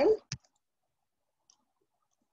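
A man's voice says a short word ('done'), followed a moment later by a single sharp click.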